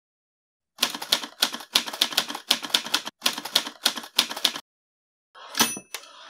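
Typewriter sound effect: rapid key strikes in several quick runs for about four seconds, then a short ringing ding of the carriage-return bell near the end.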